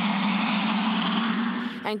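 A car engine running at steady revs with road noise, heard through a security camera's narrow-sounding microphone; it ends a little before the narration resumes.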